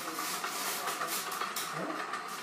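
A steady rushing hiss from a film soundtrack playing on a television, recorded off the TV's speaker, fading near the end.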